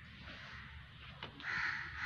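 Crows cawing, the loudest call coming about one and a half seconds in.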